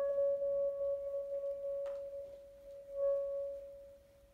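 Bass clarinet holding one high, pure-sounding note that flickers in loudness at first, with a single small click a little before halfway. The note swells once more and then fades away to nothing near the end.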